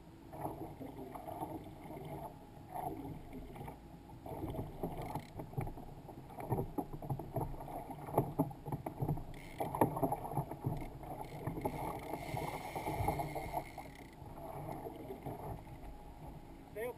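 Water lapping and slapping against a kayak's hull, with irregular small knocks, a little louder for a few seconds past the middle.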